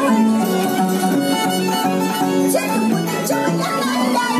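Violin and Andean harp playing a huayno together: the violin carries the melody while the harp plucks a steady, rhythmic bass.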